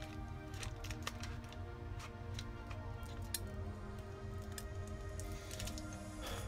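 Quiet background music with scattered light clicks and ticks from handling the iPod Classic's metal back case and its small screws with a screwdriver.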